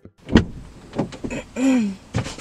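Bumps and rustling of a person getting into a car's driver seat: a heavy thump about a third of a second in and a softer knock about a second in. Near the end comes a short vocal sound falling in pitch.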